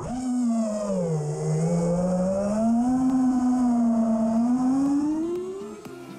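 Brushless motors and 5-inch propellers of an FPV quadcopter (Emax Eco 2207 2400KV) whining with throttle as it takes off. The pitch drops in the first second, then climbs and rises higher near the end, over a steady hiss of prop wash.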